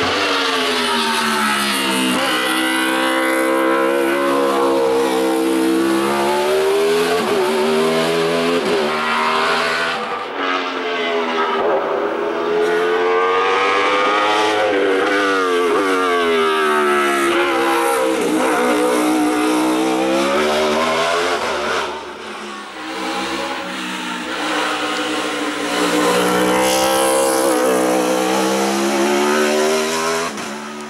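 Open-cockpit sports-prototype race car's engine at high revs, its pitch climbing and dropping again and again through gear changes and braking for bends, and falling briefly about two-thirds of the way through before rising again.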